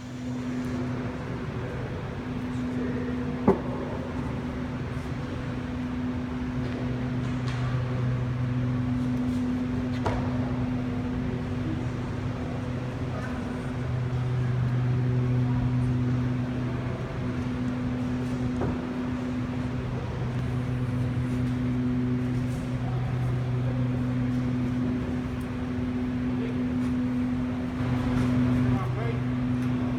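A steady low mechanical hum, one low tone with its overtones, swelling and easing every few seconds, with a sharp click about three and a half seconds in.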